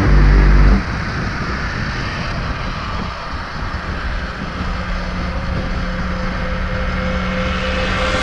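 Wind rush and rolling road noise from a speed trike coasting fast downhill at about 50–60 km/h, heard once the music soundtrack cuts off about a second in. A faint steady hum joins past the middle.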